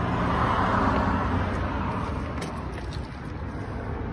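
Motor vehicle noise: a steady low engine hum, with a rush of road noise that swells about a second in and then fades away.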